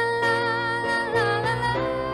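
Live song performance over electric keyboard accompaniment, played through a loudspeaker: a long high note held with a wavering vibrato over steady chords, with the melody and chords moving to new notes in the second half.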